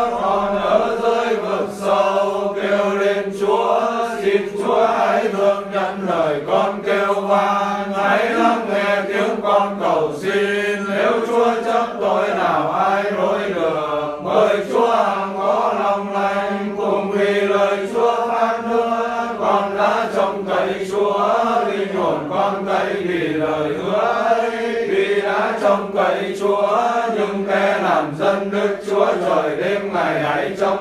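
Vietnamese Catholic prayer for the dead chanted in a continuous sing-song recitation, over a steady held low tone.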